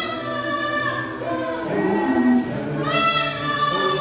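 A choir singing in long held notes, a new phrase beginning at a lower pitch about a second and a half in and rising again near the end.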